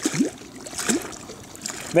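Small waves lapping and trickling against the side of a boat on choppy water, a steady low water noise. A man's voice is heard briefly at the very start and again at the very end.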